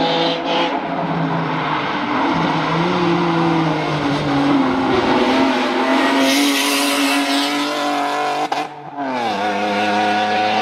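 Honda Odyssey race minivan's V6 engine pulling hard uphill as it approaches and passes, its note rising and falling with the throttle and shifts. A burst of tyre noise on the wet road as it goes through the bend about six seconds in, and the pitch drops away near the end.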